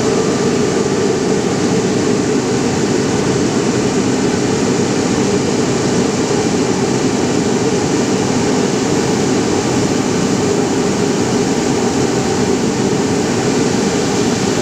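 Textile mill machinery running with a loud, steady, even drone and no breaks, as yarn winds from the bobbins.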